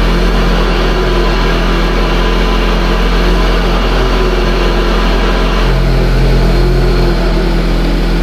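A 2017 VW Golf SportWagen 4Motion engine idling steadily, heard from inside the cabin as a low, even drone; a low note in it grows a little louder about six seconds in.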